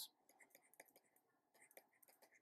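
Near silence: room tone with a few faint ticks, one about a second in and one near the end, from handwriting.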